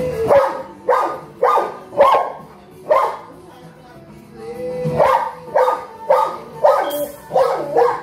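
Young Cane Corso barking in two runs of quick barks, about two a second, with a pause in between. Each run starts from a drawn-out whine.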